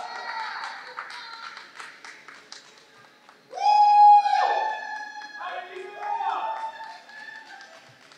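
A few people cheering with high-pitched whoops and shouts, the loudest a long high whoop about three and a half seconds in, with a few scattered claps.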